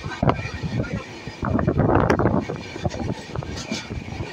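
Running noise of a moving Indian Railways train heard from on board: wheels rumbling and clattering on the rails, with wind on the microphone, loudest about a second and a half in.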